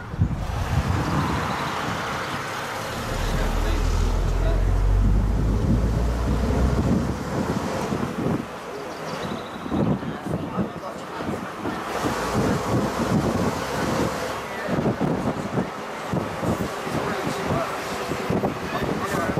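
Wind buffeting the microphone on the open top deck of a moving bus, with the bus's engine and road noise underneath. The wind rumble is heaviest a few seconds in, then keeps gusting.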